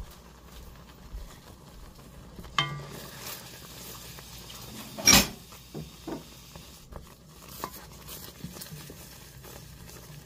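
Wooden spoon stirring a boiling cream sauce in a pan as a stick of butter melts in, over a faint bubbling. The spoon gives a few light knocks and scrapes against the pan, the loudest one about halfway through.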